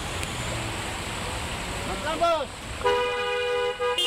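A steady rushing noise, a short voice calling out about two seconds in, then a car horn held in one long honk from about three seconds in, with a brief dip partway through, still sounding at the end.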